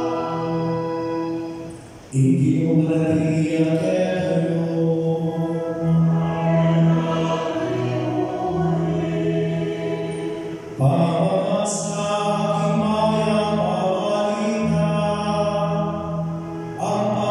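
Mixed choir of men and women singing, with long held notes. The sound dips briefly just before two seconds in, then the choir comes back in louder, with another strong entry about eleven seconds in.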